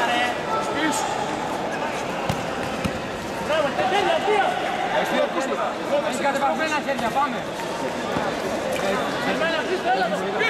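Several voices calling and shouting over one another around a kickboxing bout, with a couple of dull thuds a little over two seconds in.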